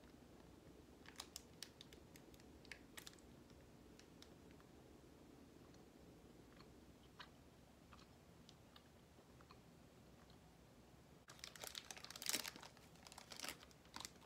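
Mostly near silence with faint chewing of a candy bar and a few soft clicks, then a burst of crackly crinkling from the candy's wrapper about eleven seconds in.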